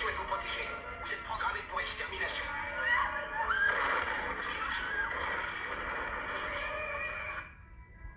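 Film soundtrack playing from a smartphone: music with voices over it and a few high rising cries, dropping away abruptly shortly before the end.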